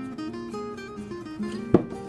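Background acoustic guitar music with plucked notes. Near the end, a single sharp knock as a glass bowl is set down on the countertop.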